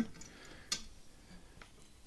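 Faint handling of a zither tuning pin and the broken metal string end being worked out of it: one sharp little click a little under a second in and a couple of fainter ticks.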